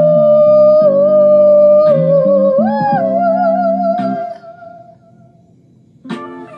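A woman's long, wordless sung note over a backing track's low chords, wavering with vibrato in its second half and fading out about four to five seconds in.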